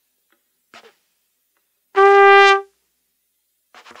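Solo trumpet: a faint short unpitched puff of air early on, then one clear held note lasting under a second about two seconds in, then more short breathy puffs near the end.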